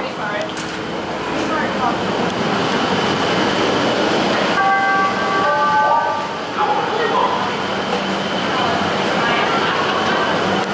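Busy subway station: crowd chatter and train noise in an underground platform, with a brief cluster of steady high tones about five seconds in.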